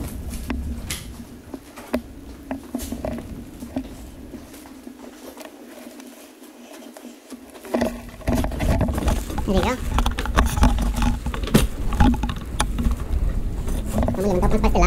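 Handling noise of a plastic-wrapped sleeper sofa being carried: scattered knocks, rustles and footsteps, with a low rumble setting in about eight seconds in.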